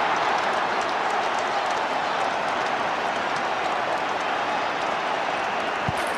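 Football stadium crowd cheering steadily just after a goal.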